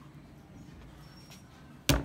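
A single sharp, loud slap near the end as a ball of clay is thrown down onto the wet pottery wheel head, over a low steady hum.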